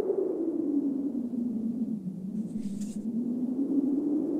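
A low, wavering drone on the cartoon's soundtrack, sinking in pitch around the middle and rising again, with a faint hiss about two and a half seconds in.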